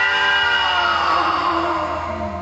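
Rock music with electric guitar: a single sustained note slides slowly down in pitch, with little drums or bass under it.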